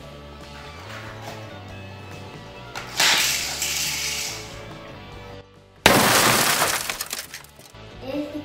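Background music, over which come two loud crash-and-shatter bursts: one about three seconds in, and a louder one just before six seconds that starts suddenly out of a short silence. Each fades over a second or so and marks the toy car crashing into the plastic soldiers.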